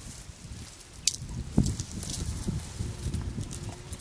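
African elephant feeding on a shrub, its trunk tearing at the leafy branches: rustling and crackling of twigs and foliage, with two sharp cracks about a second and a half in, over a constant low rumbling noise.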